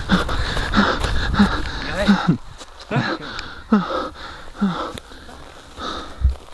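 A man panting hard and out of breath, with a short voiced gasp about every second. For the first two seconds the gasps come over heavy rustling from movement, which then falls away.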